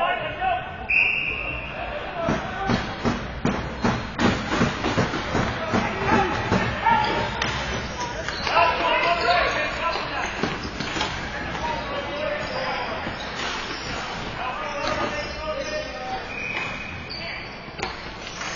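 Ball hockey play: sticks clacking and a plastic ball knocking on the sport-tile floor and boards in quick irregular strikes, thickest in the first half, with players shouting. A brief high squeal sounds about a second in and again near the end.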